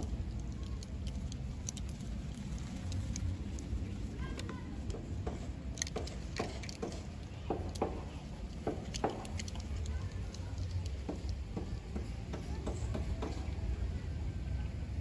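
Outdoor wind rumbling steadily on the microphone, with faint scattered clicks and ticks.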